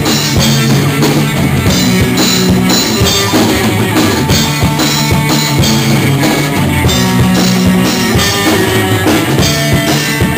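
Live rock band playing loud: electric guitars over a steady drum-kit beat.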